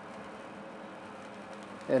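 Grain bin aeration fan running steadily, with air rushing out through the small vent opening in the bin roof. The fan is working against roughly three quarters of an inch of static pressure.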